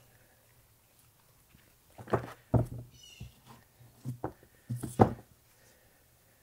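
Plastic-framed HEPA cabin air filters being handled: a cluster of knocks and clatters as the frames are set down on and lifted off the frunk tub, starting about two seconds in. The two loudest knocks fall near the middle and near the end.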